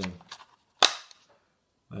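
One sharp plastic-and-metal click a little under a second in, as an AA battery snaps into the spring contacts of a Salus RT500RF wireless thermostat's battery compartment.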